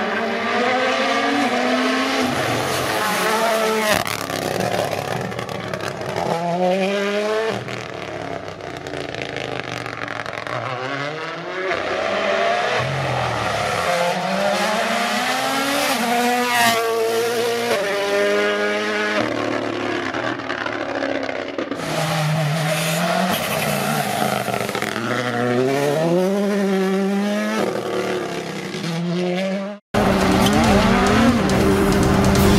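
Toyota Yaris GR Rally1 rally car's turbocharged four-cylinder engine at full throttle. Its pitch climbs through the gears and drops sharply at each shift and braking, with a few sharp cracks along the way. It grows louder as the car comes up the road and passes close by.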